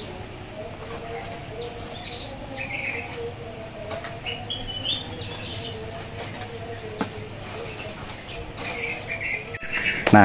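Plastic liner bag rustling and crinkling as crisp tumpi crackers are set into it by hand, one at a time, over a steady background hum.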